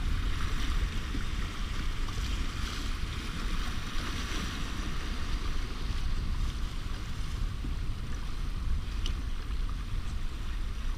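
Rushing river water and small waves splashing against the hull of a loaded canoe running a rapid, with wind buffeting the microphone as a steady low rumble.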